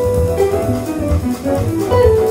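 Jazz ensemble playing live, with guitar and double bass to the fore and a long held melody note that gives way to a moving line about half a second in.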